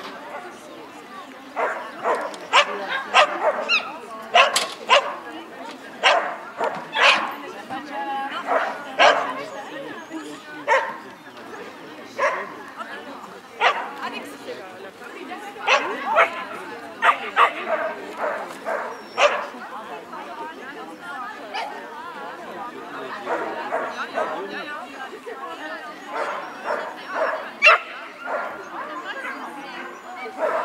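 A dog barking over and over in short, sharp barks, about one every second, thinning out past the middle of the run and picking up again near the end.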